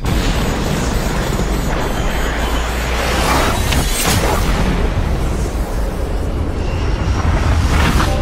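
Fighter jet roar in film sound design, a dense wall of noise with deep booms beneath it. Sharp hits come about four seconds in and again at the end.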